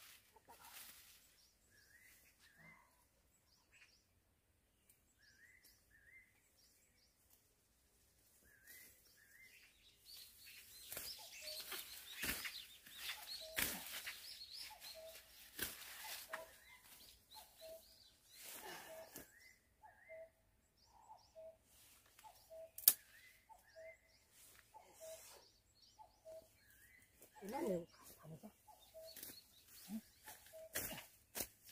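Birds calling: short chirps early on, then one short low note repeated a little faster than once a second through the second half. In the middle, leaves and branches of a fruit shrub rustle loudly as fruit is picked by hand, with one sharp click a little later.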